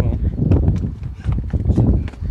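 Handling noise on a handheld phone microphone: a low, uneven rumble with irregular knocks and rubbing as the phone moves against clothing.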